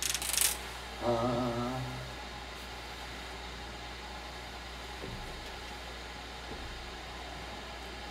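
A pause in a live sung performance. A brief hiss of noise comes at the start and a short held note follows about a second in. Then some six seconds of steady low hum and quiet room tone.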